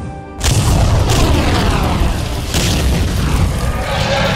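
A loud cinematic boom sound effect cuts in about half a second in, over a held music chord, followed by a deep rumble with falling sweeps and further hits about a second in and again near two and a half seconds.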